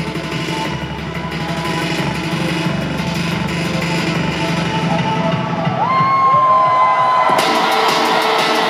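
Live rock concert heard from the audience: an electronic beat, played on a lit pad controller, plays through the PA with the crowd cheering. About six seconds in, a long held tone rises in, and about a second later a bright, hissy wash of cymbals or crowd noise opens up.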